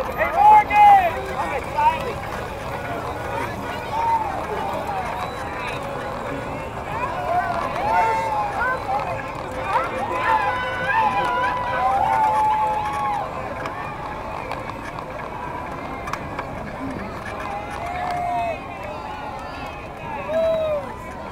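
Voices of a roadside crowd, many people talking and calling out at once with no single clear speaker, over the steady low noise of a slow-moving vehicle.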